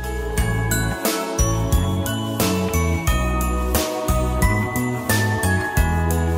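Background music: a tune of struck, ringing notes over a bass line.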